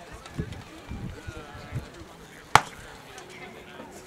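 A single sharp crack about two and a half seconds in: a rattan weapon blow landing in SCA armoured combat, with a few softer thuds of the fighters' movement before it.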